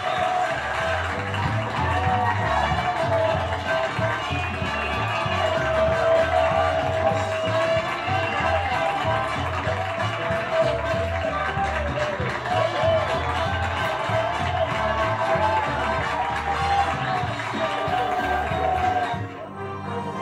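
Game-show closing theme music with a steady beat, running continuously and dropping away about a second before the end.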